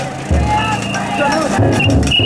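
A big taiko drum inside a chousa festival float, struck in three deep beats, under the shouts and chanting of the carriers. Short high steady tones sound in between.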